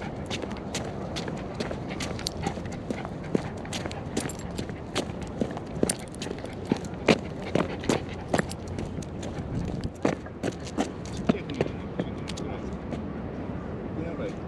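Quick, irregular steps on stone paving as a miniature schnauzer runs with the camera close behind, a few sharp clicks a second, loudest in the middle, over a steady low rumble.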